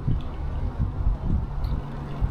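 Wind buffeting the camera's microphone: an uneven low rumble that surges irregularly.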